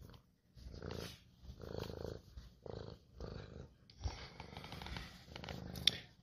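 Long-haired domestic cat purring close up, in rhythmic pulses a little more than once a second that run together in the second half.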